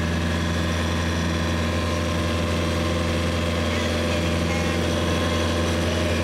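Sailboat's auxiliary engine running steadily at a constant speed, a low, even hum.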